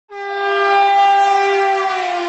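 Horn of the Train 18 (Vande Bharat) engineless electric trainset sounding one long, loud, steady note as it approaches, dipping slightly in pitch near the end as the train passes.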